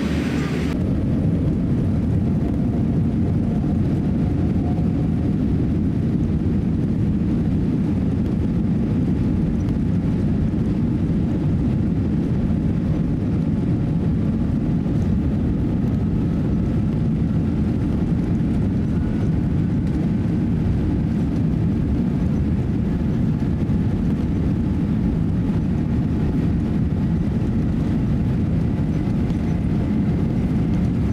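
Boeing 787-8's Rolls-Royce Trent 1000 engines and airframe heard from inside the cabin during the takeoff roll: a steady, loud, deep rumble. From about midway a faint whine rises slowly in pitch as the jet accelerates down the runway.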